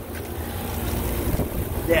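York rooftop package air-conditioning unit running in cooling mode, a steady low mechanical hum that grows louder as the microphone nears it, with wind on the microphone.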